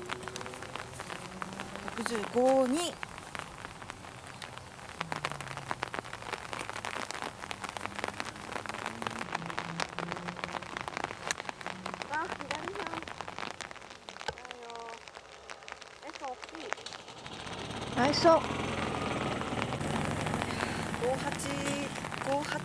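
Rain falling steadily: a dense, continuous patter of drops close to the microphone.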